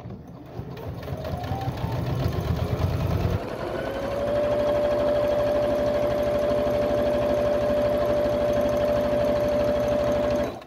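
Household electric sewing machine stitching a seam: it speeds up over the first four seconds or so, then runs fast and steady with a steady motor whine over the rapid clatter of the needle.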